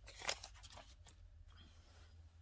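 Paper banknotes rustling as stacks of bills are handled and set down on a table: one crisp rustle about a quarter second in, then a few faint ticks of paper against the tabletop.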